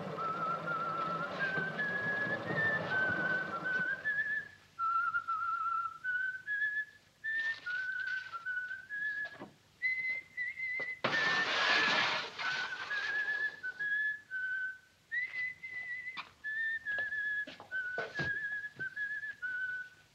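A man whistling a tune of short stepped notes. For the first four seconds a dough mixer runs under it. About eleven seconds in there is a brief rush of noise, and there are scattered knocks.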